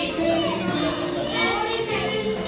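Many children's and adults' voices at once, talking and calling out over each other.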